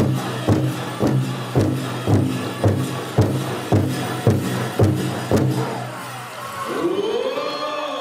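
Powwow drum group singing a chicken dance song, men's voices over a big drum struck about twice a second. The drum and song stop about five and a half seconds in, and crowd cheering follows with a long rising-and-falling whoop.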